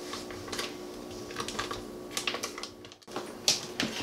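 Scattered light clicks and crinkles of a paper butter wrapper being peeled off a stick of butter, over a faint steady hum. The sound drops out briefly about three seconds in.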